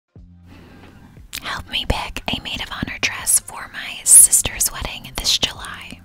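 A woman whispering close into a microphone, ASMR-style, with sharp, hissy s-sounds. The whispering starts about a second in.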